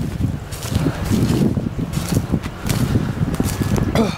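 Footsteps crunching through dry leaf litter and brush, over an uneven rumble of wind on the microphone.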